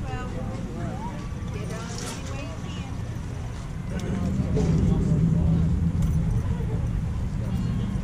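Faint, indistinct voices calling out at a distance over a steady low rumble that grows louder about halfway through.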